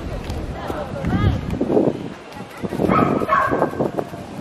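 Nearby people talking, with short high-pitched calls about a second in and again near the end.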